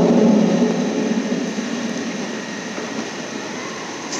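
Large reverberant church interior: a held low note from the sound system dies away in the first second, leaving a steady wash of room noise and congregation murmur that slowly fades.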